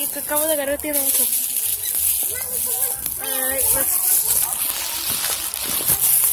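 A voice talking in two short snatches over a steady high hiss.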